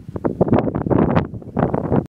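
Wind buffeting the camera microphone in loud, irregular gusts.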